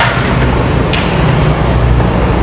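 Yamaha Mio M3 scooter's single-cylinder engine, bored up to 150cc with a Honda Sonic piston, running steadily through a semi-open aftermarket exhaust. The exhaust is leaking at the header joint, where the gasket is worn out.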